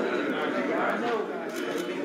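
Indistinct chatter of several people talking over one another, with a few faint clicks near the end.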